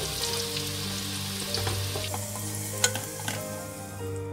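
Sliced onions and whole spices sizzling as they fry in oil in a pressure cooker, stirred with a wooden spoon that knocks against the pot a few times, most sharply about three seconds in.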